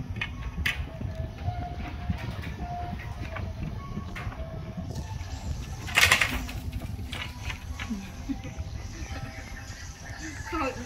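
Faint cooing bird calls, typical of doves, over a steady low rumble, with a short loud burst of noise about six seconds in.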